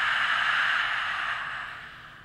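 A woman's long, forceful open-mouthed 'ha' exhale, a breathy hiss without voice that fades away toward the end: the out-breath of lion's breath (simhasana) pranayama.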